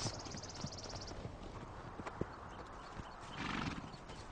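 Horses: one gives a short whinny about three and a half seconds in, with faint hoof thuds.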